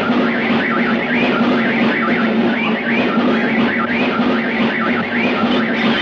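Cartoon sound effect: a steady low drone under a high warbling whistle that wobbles up and down over and over, much like a car alarm.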